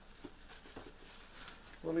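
Faint rustling and a few light taps of boxed Funko Pop figures being handled and moved aside.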